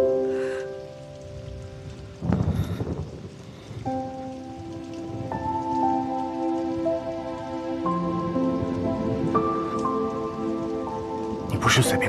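Soft background score of sustained notes that change pitch slowly, over a faint steady hiss. There is a short burst of noise about two seconds in, and a man's voice begins near the end.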